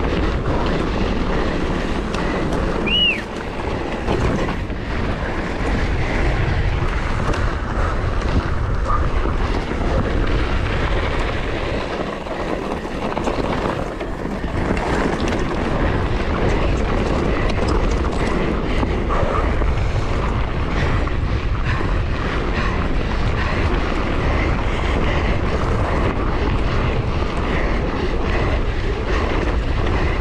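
Mountain bike descending a dirt and gravel track at speed: steady wind rush on the camera microphone over the continuous rattle and crunch of tyres and frame on the rough ground. A brief high squeal sounds about three seconds in.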